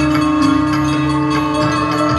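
Traditional Indian music: a long held tone under a melody, with a steady beat of short percussive strokes.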